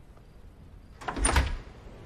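A door being opened: a short cluster of clicks and rattles with a dull thump, about a second in.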